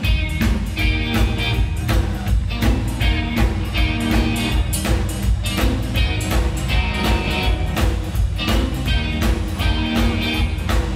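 Live rock and roll band kicking in together: electric guitars, bass and drum kit playing a steady, driving beat.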